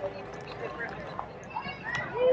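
Chatter of people nearby over outdoor background noise, with light footsteps on a dirt path.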